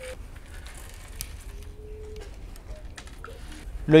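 Quiet handling of dried corn kernels on a wooden table, with a few faint clicks as kernels are swept together and dropped into a glass of water to soak.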